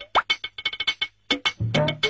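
Light comic background music: a short looped phrase of quick plucky percussive ticks, a low bass note and a quick upward slide, repeating about every two and a quarter seconds.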